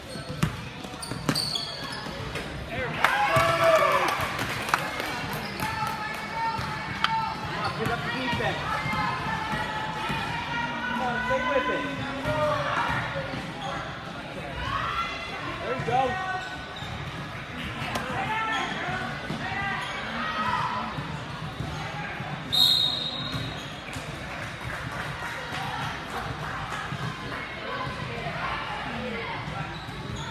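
Basketball being dribbled on a hardwood gym floor, with players, coaches and spectators shouting throughout. A short, shrill referee's whistle blast sounds about two-thirds of the way through.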